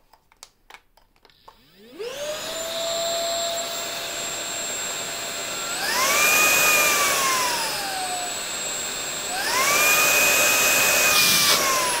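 Rowenta X-Force 11.60 cordless stick vacuum switched on after a few small handling clicks: its motor spins up about two seconds in with a rising whine and runs steadily. Twice it climbs to a higher pitch as the turbo trigger is held, then eases back down.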